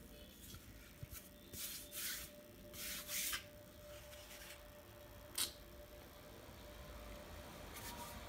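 Handling noise from a plastic pressure-washer handle being turned over in the hands above its box: a few short rustling scrapes in the first half and a single sharp click about five seconds in.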